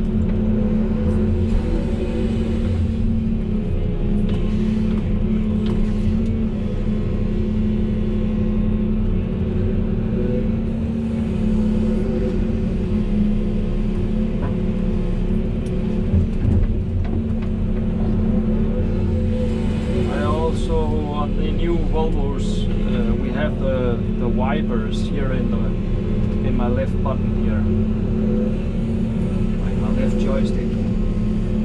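Volvo EC380E excavator's diesel engine running steadily under load, with the hydraulics working the boom and bucket, heard inside the cab. Wavering pitched sounds come in over the drone about two-thirds of the way through.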